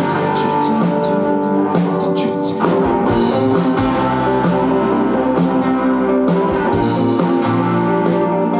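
Live psychedelic rock band playing an instrumental passage: sustained electric guitars over a drum kit, with regular drum and cymbal hits.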